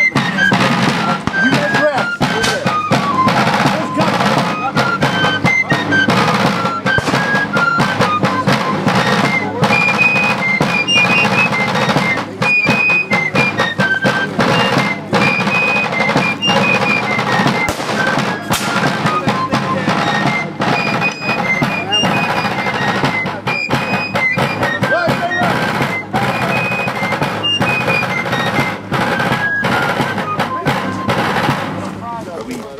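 A fife and a rope-tension field drum playing a military march. A high, shrill fife melody runs over rapid, continuous drum strokes.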